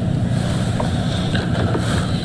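Television news channel ident sting: a loud, steady deep rumble with a hiss over it, played under the channel's logo card.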